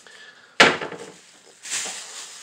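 A single sharp knock about half a second in, dying away quickly, followed near the end by a short soft hiss.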